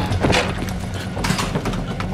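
Commotion of a convulsing patient being lifted and moved onto a hospital bed: a few knocks and bumps of bodies and bedding, over a low steady drone.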